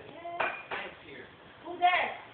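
Kitchenware clinking a couple of times, with short bursts of voices; a loud voice near the end.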